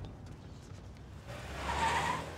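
Acura SUV driving off: a low engine rumble, then a tyre squeal that swells and peaks near the end.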